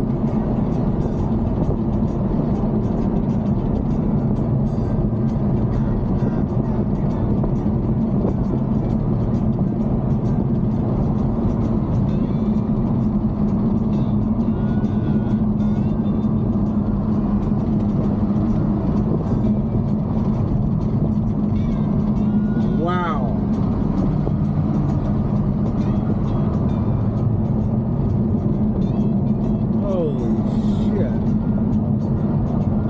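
Cabin sound of a Ferrari GTC4Lusso cruising at a steady speed: an even engine drone with road and tyre rumble, unchanging throughout. A brief wavering tone rises and falls a little past the two-thirds mark.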